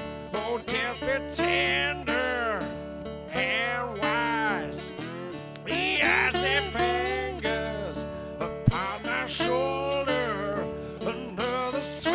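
A man singing a dark acoustic blues song over his own acoustic guitar, with held notes that waver with vibrato. A single sharp knock comes about two-thirds of the way through.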